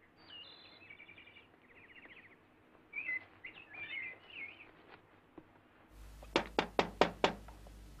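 Birds chirping and twittering, then a quick series of about five knocks on a door near the end.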